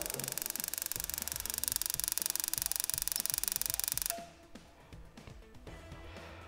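Gas boiler's spark ignition firing: a rapid, crackling train of clicks from the ignition electrodes, growing louder after about a second and a half, then stopping suddenly about four seconds in as the burner lights.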